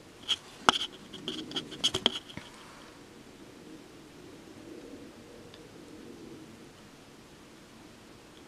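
Small clicks and light scratching from handling a makeup brush and compact while applying eyeshadow, bunched into about the first two seconds.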